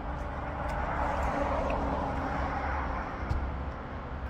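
A car passing on the street, its engine and tyre noise swelling over the first couple of seconds and then fading, over a steady low rumble of road traffic.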